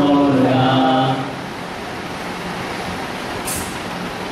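A line of devotional chanting in a steady, held voice ends about a second in. A pause of steady room hiss follows, with a brief sharp hiss near the end.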